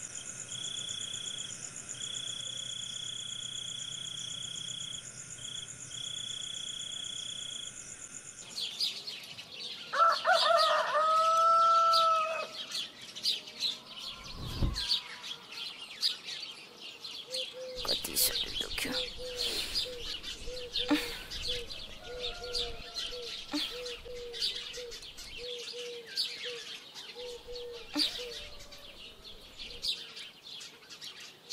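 A steady, high night-time trilling of insects with short gaps, which switches about eight seconds in to morning bird chirping. A rooster crows once at about ten seconds in, and from about eighteen seconds a rapid run of short low calls, like a hen clucking, goes on under the chirping.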